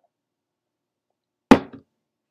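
A single sharp knock about one and a half seconds in, followed at once by a smaller one: a metal drinking cup being set down on a hard surface.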